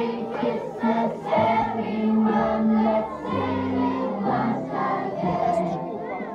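A choir singing a song, the voices holding notes that change every half second to a second.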